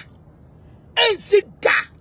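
Speech only: after a pause of about a second, a woman speaks out loudly in short, forceful bursts.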